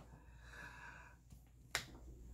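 Near-quiet room with one short, sharp click about three-quarters of the way through.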